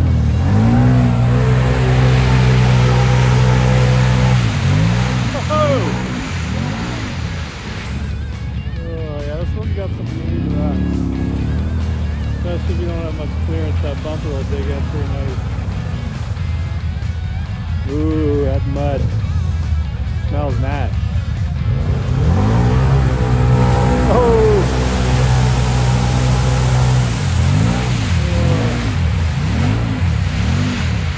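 Side-by-side UTV engine revved hard and held at high revs while its wheels spin in deep mud, with repeated shorter rev blips between, as it is stuck and clawing its way through a mud hole.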